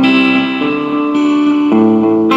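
Stratocaster-style electric guitar being played, with held notes that change pitch about every half second.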